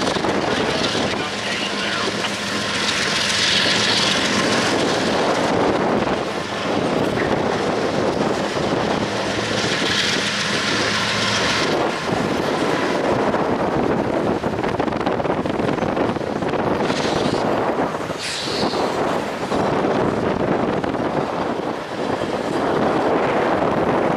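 CSX double-stack intermodal train passing: the drone of its two lead diesel locomotives fades about halfway through as they pull away, while the container well cars roll by with a steady rumble and clatter of wheels on rail.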